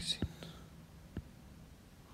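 A man's brief whisper right at the start, then a few faint clicks over low room tone.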